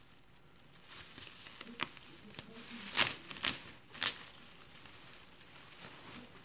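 Thin plastic shopping bag rustling and crinkling as hands rummage in it, with several sharper crackles, the loudest about three seconds in.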